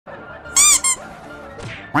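Two high-pitched squeaks like a squeeze toy, about half a second in, one longer and one short, each slightly rising then falling.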